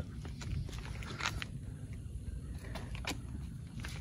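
Handling of a carbon-fibre motorcycle helmet as it is carried and set down on pavement: a few faint scattered clicks and taps over a low steady rumble.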